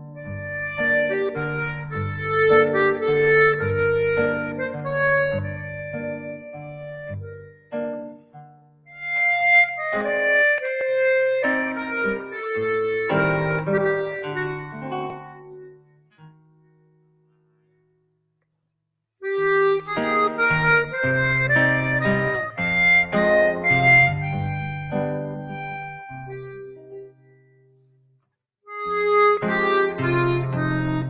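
Diatonic button accordion playing a slow instrumental tune, sustained melody notes over chords and bass. It falls silent for a couple of seconds about 17 seconds in, and again briefly near the end.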